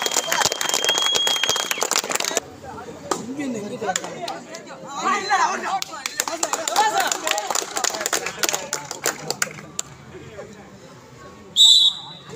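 Referee's whistle: a long, steady blast ends about one and a half seconds in over a patter of clapping, and a short, loud blast sounds near the end. Crowd chatter and shouting run in between.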